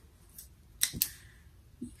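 Two sharp clicks in quick succession about a second in, like small hard objects snapping or tapping together, with a few fainter taps around them.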